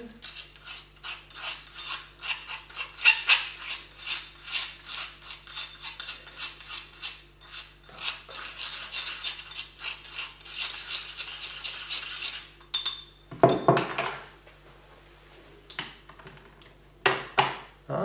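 Plastic spatula stirring and scraping a dry sugar-and-baking-soda powder in a porcelain bowl: quick scratchy strokes that stop about two thirds of the way in, followed by a few knocks near the end as the bowl and spatula are set down on the table.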